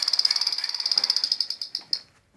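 A battery-powered toy gun's electronic firing sound: a high, fast-pulsing buzz that breaks up and stops near the end.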